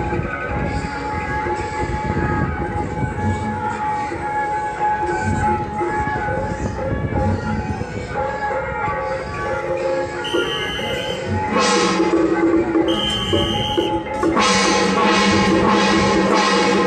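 Procession band music with drum beats over crowd noise, then loud held brass chords from about three-quarters of the way in.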